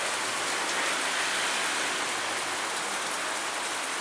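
Heavy rain in a downpour, a steady even hiss of falling water with no letup.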